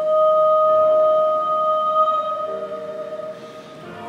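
A woman's voice holds one long high sung note into a microphone, accompanied on grand piano. A new low piano chord comes in about halfway through, and the held note fades out near the end.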